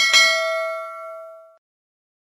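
Subscribe-animation sound effect: a click and then a single notification-bell ding with several ringing overtones, fading and stopping about one and a half seconds in.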